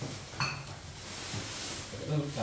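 Groceries being handled on a table: a single light clink with a brief ring about half a second in, then quiet handling noise.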